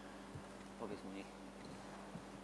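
Faint, steady low hum, with a soft knock near the start and a brief, faint murmur of a voice about a second in.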